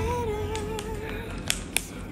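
A background song's held, wavering sung note fades out. Then come two sharp clicks about a second and a half in, from a metal mesh tea infuser knocking against a ceramic mug as it is set in place.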